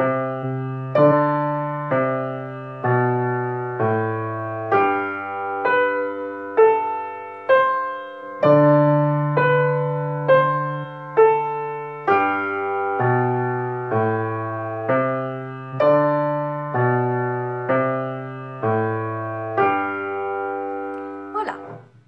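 Upright piano playing a simple beginner étude with both hands together. A slow right-hand melody, about one note a second, moves over held left-hand bass notes, and the last chord rings out and fades near the end.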